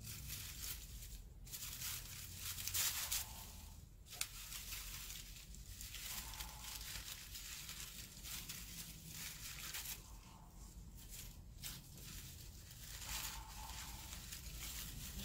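Cut paper fringe rustling and crinkling as it is wound tightly around a paper-covered stick by hand, in irregular handling noises with no speech, loudest about three seconds in.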